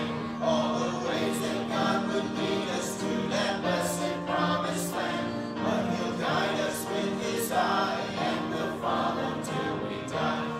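A group of voices singing a hymn in sustained, phrased lines.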